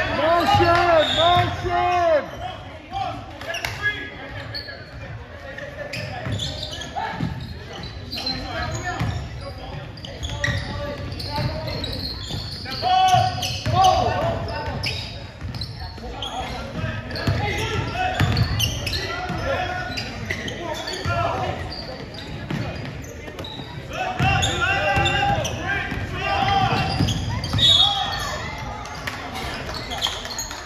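Basketball game on a hardwood gym floor: the ball bouncing during dribbling, with players' and spectators' indistinct voices calling out, echoing in a large hall.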